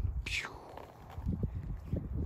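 A short breathy hiss near the start, then a quick run of soft gritty scuffs in the second half: footsteps on sand-strewn concrete.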